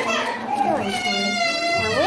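A young girl's high voice vocalising without clear words, ending in one long held note.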